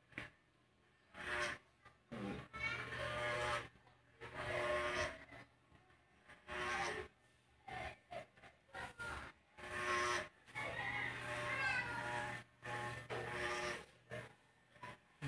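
Corded electric hair clipper buzzing with a low steady hum in stretches as it cuts, with indistinct voice sounds coming and going over it.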